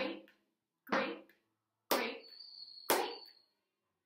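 Four hand claps in a steady beat, about one a second: the one-clap-per-'grape' rhythm of a body-percussion game.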